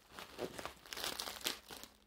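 Plastic wrapping crinkling and rustling in irregular bursts as it is handled and pulled off a picture frame.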